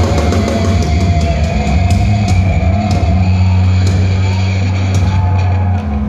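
Heavy metal band playing live: distorted guitars and bass holding long low notes, with drum and cymbal hits.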